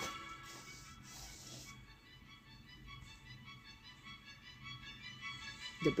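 Faint background music with steady held notes, and a soft hiss in the first second or two.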